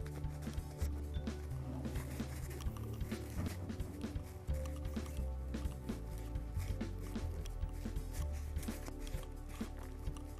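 Background music with held bass notes that change in steps under a steady, light beat.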